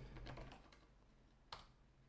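Faint computer keyboard typing: a few soft keystrokes in the first half second, then one sharper key press about a second and a half in.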